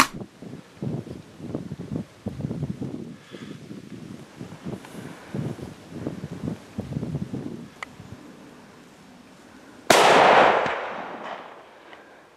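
A single Blaser hunting rifle shot about ten seconds in, fired at a red deer stag, its report ringing out and dying away over about a second and a half. Before it, faint low scuffing and rustling noises.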